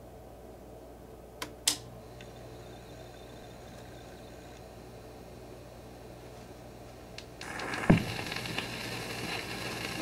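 Record player starting up: two sharp clicks about a second and a half in, then a steady low hum. Near the end the stylus is set down on the spinning 78 rpm record with one thump, and the surface noise of the lead-in groove hisses and crackles until the music begins.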